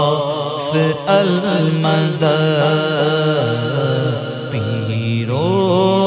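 Male voice singing an Urdu devotional manqabat in a drawn-out, ornamented melodic line over a steady low drone.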